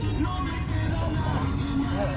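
Music playing, with a steady bass line under a melody.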